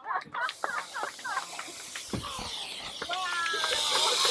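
Propane hissing from a hot air balloon's burner as the pilot works its valves, starting suddenly about half a second in and getting louder toward the end.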